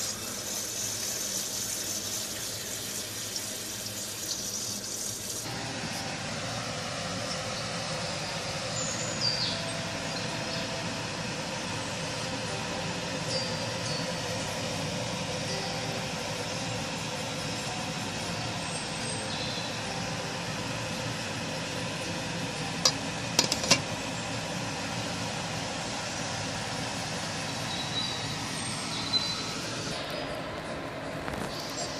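Tap water running into a steel pot of chicken skins for the first five seconds or so, then a steady rushing noise, with a few sharp clicks about three quarters of the way through.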